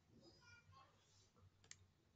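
Near silence: quiet room tone, with one faint, sharp click about three-quarters of the way through.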